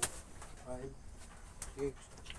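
A sharp click right at the start. A short pitched vocal sound comes about three quarters of a second in, and a man's voice calls out "four" near the end as he counts off a punch combination.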